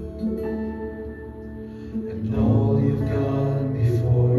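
Live worship band playing a slow passage: acoustic guitar and keyboard over electric bass, the sound filling out and growing louder about halfway through.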